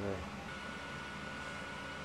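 A steady low electrical hum from mains-powered bench electronics, with a thin steady whine that comes in about half a second in; a brief voice sound at the very start.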